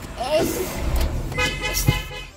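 A vehicle horn sounds with a steady pitch for about half a second near the end, over a constant rumble of road traffic. A short wavering vocal sound comes about a third of a second in.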